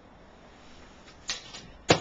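Quiet room tone, then a short swish about a second and a quarter in and a sharp smack just before the end: a thrown play javelin striking a person.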